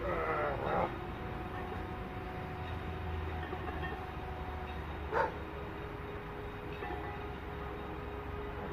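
A man's strained vocal groan, under a second long, as he drives up out of a heavy barbell front squat. Then a steady low outdoor hum with faint steady tones, and a brief high squeak about five seconds in.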